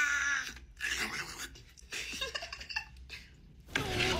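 A young woman's drawn-out vocal exclamation, then short, broken bursts of laughter.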